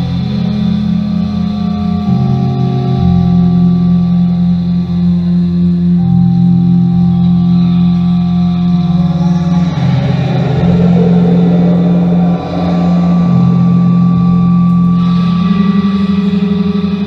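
Live experimental electronic music: sustained low synthesizer drones that step to new pitches every few seconds, with a rough, distorted noise texture swelling in about ten seconds in and fading near the end.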